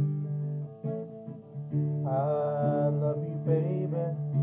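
Acoustic guitar playing chords, with a man's singing voice coming in about halfway through on a long held note, then a shorter one.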